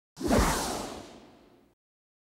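Whoosh sound effect for an animated title: one quick swoosh that slides down in pitch and fades away over about a second and a half.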